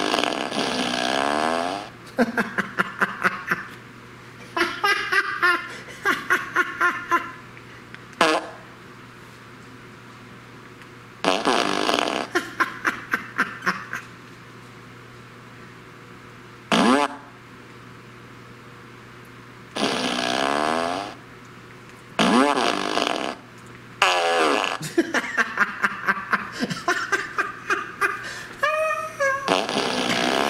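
T.J. Wisemen Remote Controlled Fart Machine No. 2 playing recorded fart sounds through its speaker. There are about ten separate farts with short gaps between them; some are long and sputtering with a wavering pitch, others short.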